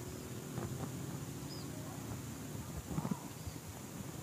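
Hands working potting soil in around bonsai roots in a plastic pot: soft rustling and scraping with a few light knocks, the clearest about three seconds in.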